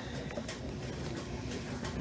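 A few faint snips of grooming scissors trimming fur around a dog's paw, over a low steady hum.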